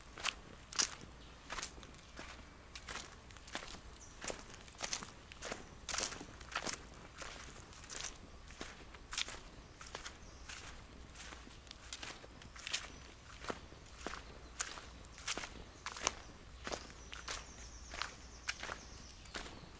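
Footsteps of someone walking at a steady pace on dry dirt ground scattered with fallen leaves, about one and a half steps a second.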